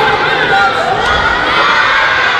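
A crowd of children shouting together, many high voices overlapping without a break.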